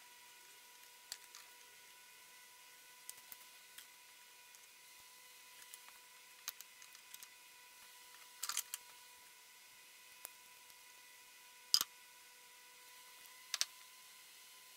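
Sparse faint clicks and taps of small metal parts being handled, a few at a time, the sharpest about twelve seconds in, over a faint steady high tone.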